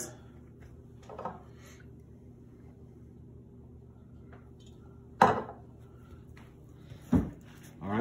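A glass oil bottle set down with a single sharp knock on a stone countertop about five seconds in, over a steady low hum; a shorter, duller thump follows near the end.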